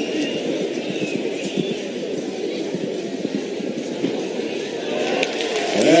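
Crowd murmuring in a large arena, a dense mass of overlapping voices, swelling in the last second or so.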